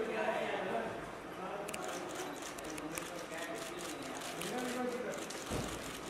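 Several people talking and calling out indistinctly, with short clicks scattered through from about two seconds in.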